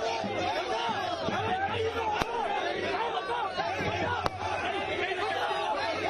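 Crowd of many people talking at once, their voices overlapping into a steady chatter. Two sharp clicks cut through it, about two seconds and four seconds in.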